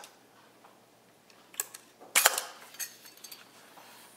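Honeywell Pentax Spotmatic's rewind knob pulled up and its back door unlatching with a click about two seconds in, followed by a few lighter clicks as the door is swung open.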